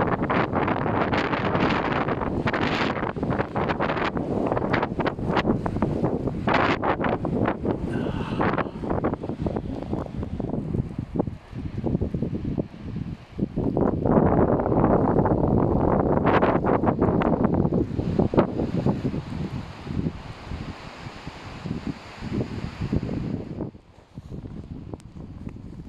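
Snowstorm wind buffeting a mobile phone's microphone in gusts, loud throughout, with a short lull a little before the middle, the strongest gust just after it, and easing over the last few seconds.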